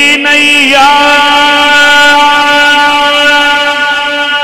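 A man's voice singing a devotional refrain: a quick ornamented turn, then one long held note, loud and steady.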